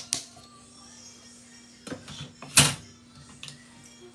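A few sharp clicks and knocks, the loudest about two and a half seconds in, over a steady low hum.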